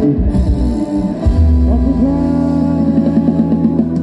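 Live band music for a Thai ramwong dance: a steady dance tune with a heavy bass line and sustained melody notes.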